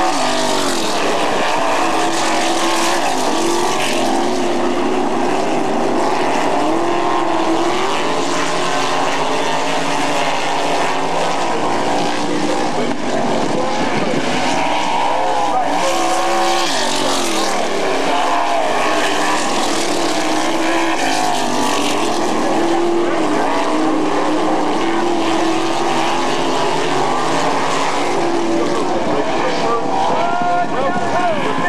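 Several sprint cars' V8 engines racing around a dirt oval, running at full throttle, with several engine notes overlapping and rising and falling in pitch as the cars pass and go through the turns.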